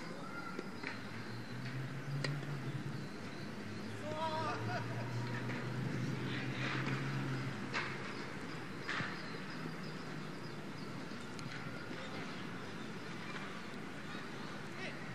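Outdoor football game: distant players shouting and calling to each other across the pitch, with a few sharp thuds of the ball being kicked. A low steady hum runs through the first half and stops a little before 8 seconds in.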